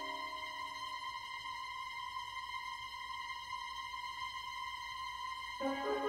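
Film score music: a single high note held steady, joined about five and a half seconds in by a lower sustained chord.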